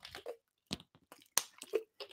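A person drinking from a glass close to a microphone: a few faint sips and swallows with small clicks and knocks.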